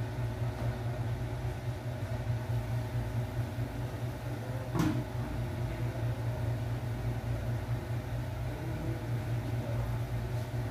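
A steady low machine hum throughout, with a single metal clank about five seconds in as the aluminium pot lid is lifted off the soup pot.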